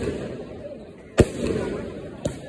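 Aerial firework shells (Diwali sky shots) bursting overhead: one sharp bang a little over a second in, followed by a rolling echo.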